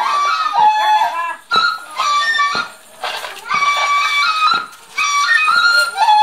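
Lisu New Year circle-dance music: a melody of held, clear notes stepping up and down, over a beat about once a second.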